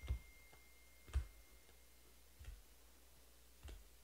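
Four light knocks a little over a second apart, as of objects set down on a tabletop, with a faint thin high tone through the first two seconds.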